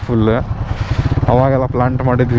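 Motorcycle engine running steadily at low speed, a low drone with rapid even firing pulses, as it rolls down a gravel track. A man's voice speaks or hums over it near the start and again in the second half, louder than the engine.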